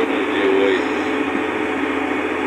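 Tractor engine running steadily under way, heard from inside the cab as a constant even drone.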